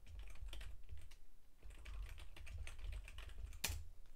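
Typing on a computer keyboard: a quick run of keystrokes entering a short command, with one louder key press near the end.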